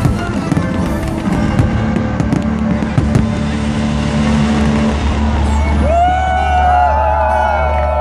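Aerial fireworks bursting and crackling over loud music for about the first five seconds. Then the bangs stop, leaving the music with wavering voices gliding in pitch over it.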